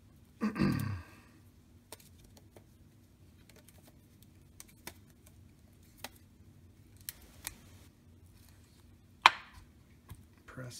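Hands handling a small wooden player-piano pneumatic block and its rubber band: scattered light clicks and taps, with a brief falling-pitched sound about half a second in. Near the end, one sharp knock as the glued block is set down on a glass plate.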